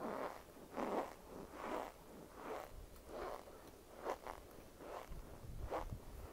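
Chewing of cornstarch chunks, a steady rhythm of short crunching chews about every 0.8 seconds.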